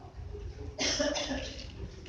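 A single short cough a little under a second in, sudden and brief, fading within half a second.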